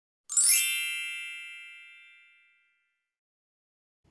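A single bright, high-pitched chime, struck once and ringing out as it fades away over about two seconds.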